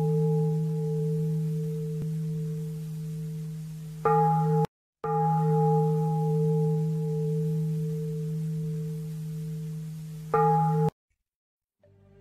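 A deep struck metal bell rings with a long, slowly fading hum of one low tone and several higher overtones. It breaks off abruptly about four and a half seconds in and rings again half a second later. It cuts off suddenly again a second before the end.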